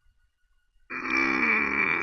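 A man's long, raspy vocal groan starting about a second in, falling in pitch as it fades.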